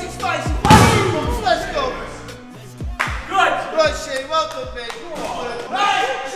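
A punch hitting the padded ball of a Boxer arcade punching machine, a single loud thud about a second in, with music and men's voices around it.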